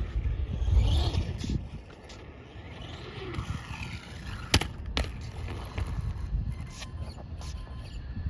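Traxxas Stampede 4x4 electric RC monster truck running with a faint steady motor whine, then landing a jump on concrete: a sharp hit about halfway through and a second smaller hit half a second later, followed by light rattles.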